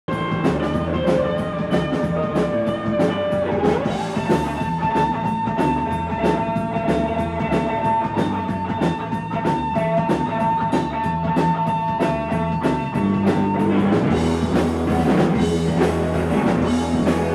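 Live rock band playing with no vocals: electric guitar over a steady, fast drum beat of about four strokes a second, with a long high note held for several seconds in the middle.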